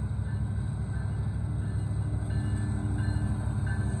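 Union Pacific mixed freight train rolling through a grade crossing: a steady low rumble of the rail cars passing on the track, with a faint high tone that comes and goes.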